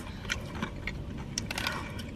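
Tortilla chips crunching as they are chewed and picked from a bowl of nachos: a few faint, crisp clicks spread through a quiet stretch.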